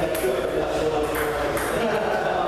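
People talking in a large hall, with a couple of light clicks of a table tennis ball, about a second apart.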